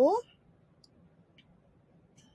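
A spoken word ends, then near silence with two faint computer mouse clicks about half a second apart.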